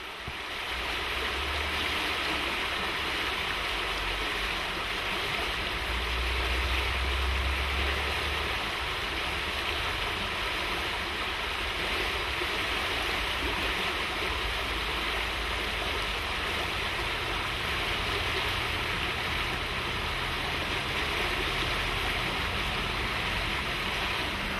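Fast-flowing brook rushing over a stony bed: a steady, even rush of water that fades in over the first second or two.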